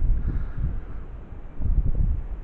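Wind buffeting the microphone outdoors, a low uneven rumble that eases and then swells again about one and a half seconds in.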